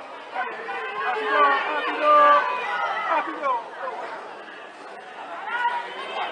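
Several high-pitched voices calling out and chattering in the background. They are loudest in the first couple of seconds and fade around four to five seconds in.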